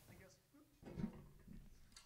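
Near silence: a pause in a man's talk, broken by one short faint sound about a second in.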